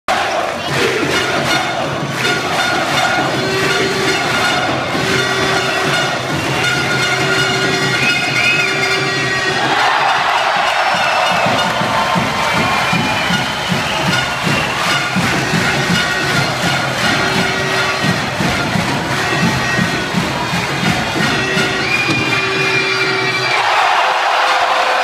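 Basketball arena crowd cheering and shouting, with sustained horn-like tones and repeated notes over the noise. About ten seconds in the crowd noise swells, and a fast rhythmic beat follows for most of the rest.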